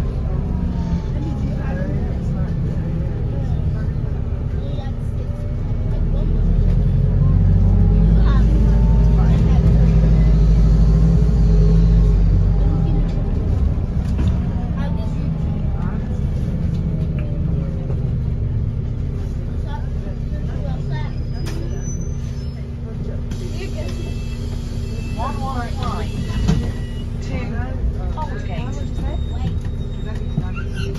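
Cabin sound of a New Routemaster (Wrightbus NB4L) hybrid double-decker bus under way: a steady low drivetrain and road rumble with a motor whine that glides down near the start and rises and falls again. The rumble grows heavier from about six to twelve seconds in. Passengers' voices run over it.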